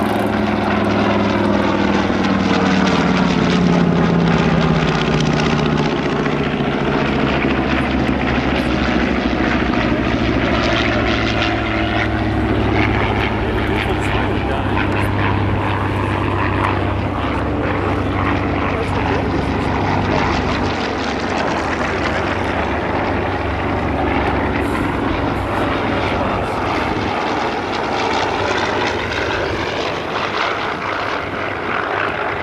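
Piston-engined warbirds flying past: the twin radial engines of a B-25 Mitchell drone overhead, their pitch dropping as the bomber passes in the first few seconds. Other propeller fighters follow, and the engine sound runs on loud and steady.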